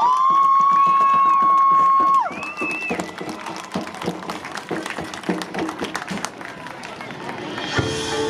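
Marching band performing its field show: a loud high note held for about two seconds over drum and cymbal strikes, then a shorter, higher note, after which only quieter scattered percussion hits go on until new lower held notes come in at the end.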